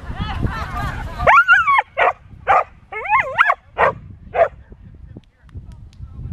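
A dog giving a run of six high-pitched yips and barks over about three seconds. Two of them are drawn out into yelps that rise and fall in pitch.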